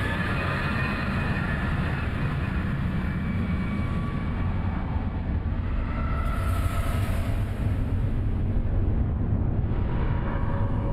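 Sound effect of a giant asteroid impact explosion: a loud, deep, continuous rumble of the blast, growing a little louder in the second half.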